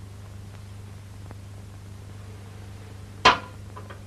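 A single sharp glass clink with a brief ring about three seconds in, followed by two small clicks, as glassware on a drinks tray with a decanter is handled; a steady low hum runs underneath.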